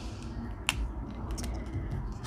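Quiet handling of a paper sticker sheet and pen over a planner, with one sharp click a little under a second in and a few faint ticks after it, over a low steady background noise.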